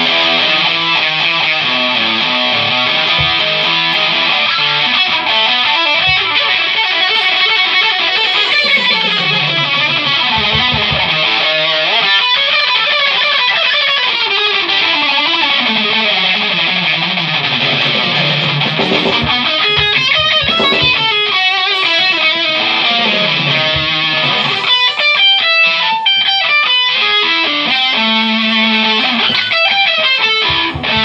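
Electric guitar played through an amplifier: chords and single-note runs, with lines falling in pitch midway and fast repeated notes near the end.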